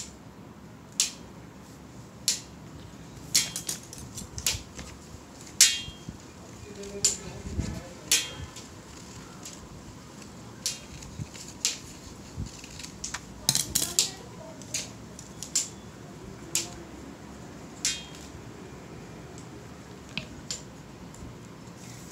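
Scissors snipping through green craft paper: short, sharp blade clicks at irregular intervals, with a quick run of several snips about two-thirds of the way through.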